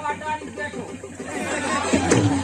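Indistinct voices talking over one another, no clear words.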